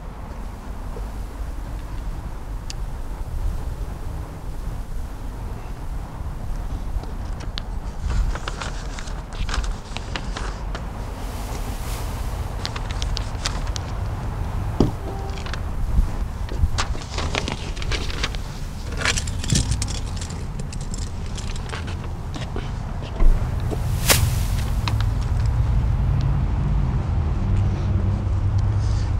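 Steady low outdoor rumble with scattered light clicks and knocks from walking and handling, and a sharp click about 23 seconds in, after which the rumble grows a little louder.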